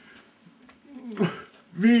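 A man's short wordless vocal sound with a falling pitch about a second in, after a quiet gap, and then the start of a spoken word near the end.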